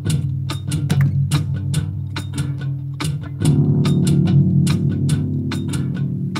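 Live-looped blues: an electric guitar playing over a low bass part and a steady percussion beat from a Wavedrum pad. About three and a half seconds in, a fuller low layer joins and the music gets louder.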